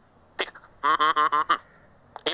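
A man's voice: after a short click, one drawn-out syllable with a wavering pitch about a second in, then a pause.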